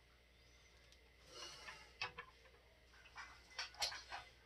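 Plastic action figure being handled and stood up on a wooden tabletop: a faint rubbing about a second in, then a few light clicks and taps as it is set down and its stiff joints adjusted.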